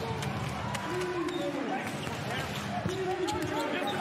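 A basketball bouncing on a hardwood court as it is dribbled up the floor, with voices from the players and crowd in the arena.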